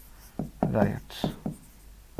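A marker scratching as it writes on a board, between a few short spoken syllables.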